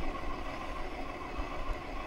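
Steady riding noise of an e-bike rolling along an asphalt path: an even low rumble of tyres and air, with a faint steady whine.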